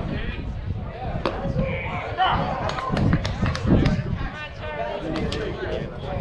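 Indistinct talking of people close to the microphone, with several sharp short clicks scattered through it.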